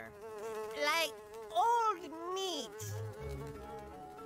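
Cartoon sound effect of flies buzzing, the buzz swooping up and down in pitch over a steady drone, with a couple of soft low thumps near the end.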